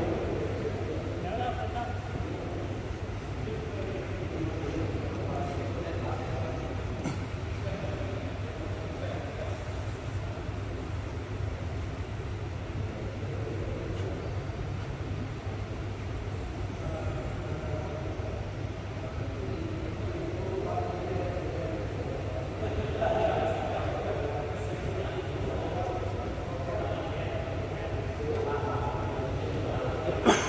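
Faint, indistinct voices of people talking in the background over a steady low hum, the voices a little louder about 23 seconds in.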